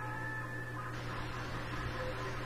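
Quiet room tone from the recording microphone: a steady low electrical hum under faint hiss, with a few faint steady tones that fade out within the first second.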